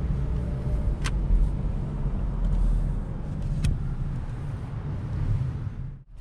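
Low, steady engine and road rumble inside a Honda Civic's cabin as it drives slowly. Two short sharp clicks stand out, about a second in and again about three and a half seconds in.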